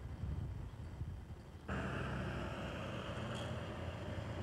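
Background noise of location sound: a low rumble that changes abruptly, under two seconds in, to a louder, steady hiss over the rumble, as at a cut between shots.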